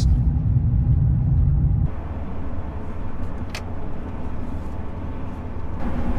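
Inside the cab of a 2020 GMC Sierra AT4 HD pickup driving on rough pavement: steady low road and drivetrain rumble, with no clunk from the newly replaced steering intermediate shaft. About two seconds in the rumble drops abruptly to a quieter, lighter road noise, and a single short click follows a little later.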